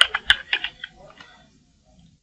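Computer keyboard typing: a quick run of keystrokes in the first second that thins out and stops about a second and a half in.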